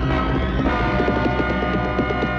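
Dramatic film background score: a steady low droning bass under sustained chords, with a fast, pulsing rhythm of short repeated notes coming in about half a second in.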